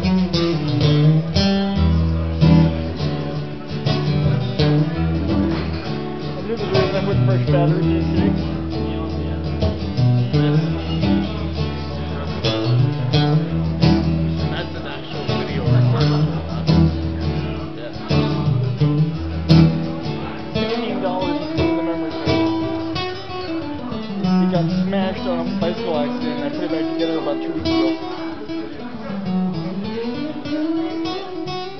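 Acoustic guitar played live, strummed and picked in a continuous instrumental passage with bass notes and quick strokes.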